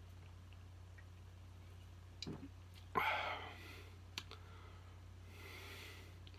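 A man drinking from a soda can: small mouth and can clicks, then a sharp breath out about three seconds in that fades away, and a softer breath near the end, over a low steady hum.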